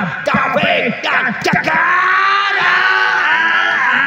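Excited yelling from a man's voice, with one long drawn-out call in the second half. A few sharp knocks come in the first second and a half.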